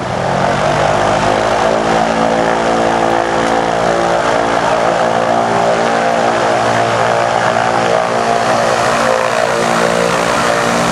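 A lightship blimp's propeller engines running at a steady pitch close by. The sound grows louder just as it begins and then holds even.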